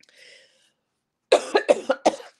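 A person coughing: a faint breath at first, then several coughs in quick succession in the second half.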